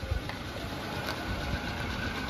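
Engine of a small Wuling mini pickup truck running at idle, a steady low rumble.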